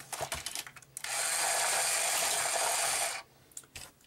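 A few plastic clicks as a die-cast toy car is set into the track, then about two seconds of a small battery motor whirring steadily as the Hot Wheels Power Tower's spiral elevator turns to lift the cars, cutting off suddenly.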